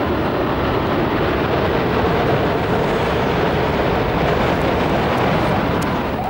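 Distant roar of a jet airliner striking a skyscraper and the fireball that follows, a loud, steady, even rumble that eases near the end.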